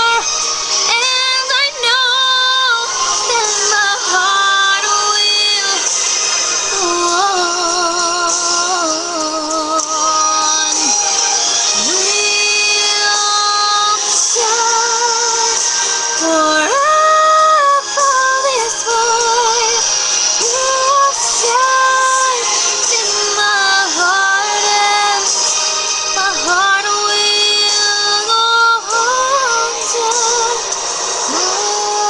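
A woman singing a slow ballad over a karaoke backing track, holding long notes with vibrato.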